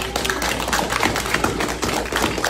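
Spectators clapping, a dense patter of hand claps.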